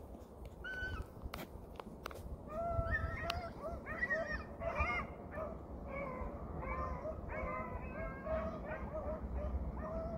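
Several hounds baying in overlapping, repeated calls that start about two and a half seconds in and carry on, typical of a pack running a rabbit.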